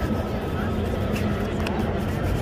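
Busy city street: a steady low traffic rumble with indistinct voices of people nearby.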